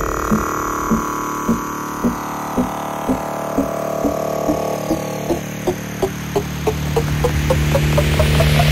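Psytrance build-up: over a sustained synth pad, a repeating short synth note climbs steadily in pitch and speeds up. The deep bass thins out in the middle, and a rising noise sweep starts to swell near the end, leading into a drop.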